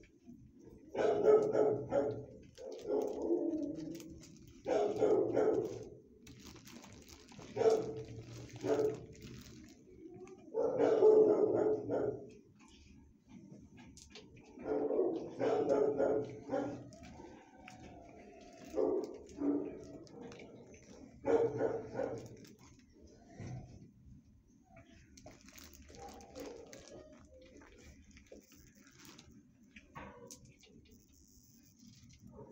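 A dog barking in repeated bouts, about a dozen over roughly twenty seconds, dying down to a faint background near the end.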